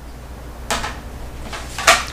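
Two brief sliding, rustling handling sounds about a second apart: a plastic die-cutting pad being settled on the machine's platform and cardstock strips being handled.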